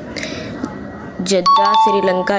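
A two-note doorbell-style 'ding-dong' chime, a higher tone followed by a lower one, starts about one and a half seconds in and rings on over a man's voice.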